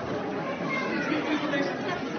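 Many people's voices at once, a crowd chattering with no single voice standing out.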